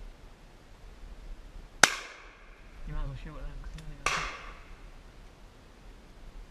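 Two shotgun shots about two seconds apart, the first the louder, each followed by a short echo that dies away.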